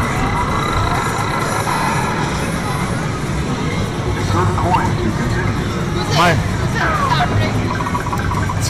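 Busy arcade din: game machines' electronic music and gliding sound effects over background chatter.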